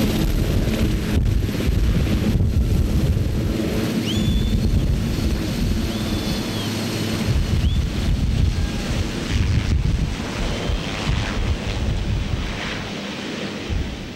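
Sikorsky VH-3 Sea King helicopter (Marine One) lifting off and flying away: loud rotor and turbine noise with heavy rotor-wash wind buffeting the microphone, growing fainter over the last couple of seconds as it climbs away.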